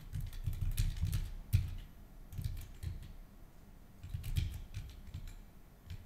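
Computer keyboard typing in three quick runs of keystrokes with short pauses between, one sharper key press about a second and a half in.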